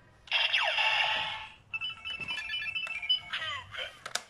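Electronic sound effects from a Kamen Rider Zi-O toy transformation belt and Kuuga Ridewatch. A loud sweeping sound with falling tones comes first, then a short beeping jingle, then a second falling sweep near the end.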